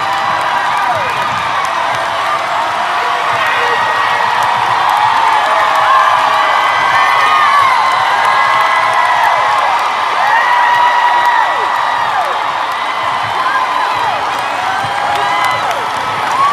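Large arena crowd cheering and screaming, many high voices whooping over one another in a sustained roar of noise.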